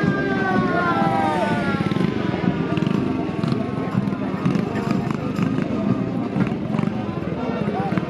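A marching band's brass chord is held and then falls away in pitch and dies out about two seconds in. After that comes a steady mix of crowd chatter and a motorcycle engine running as it passes at low speed.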